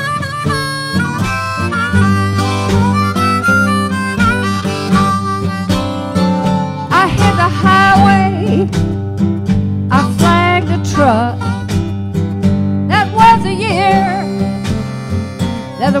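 Live acoustic blues instrumental break: a harmonica leads with several bent notes about seven, ten and thirteen seconds in, over a steady acoustic guitar and light drum percussion. The singing voice comes back in at the very end.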